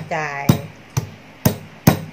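Stone pestle pounding whole peppercorns in a stone mortar to crack them coarsely: four sharp strikes about half a second apart.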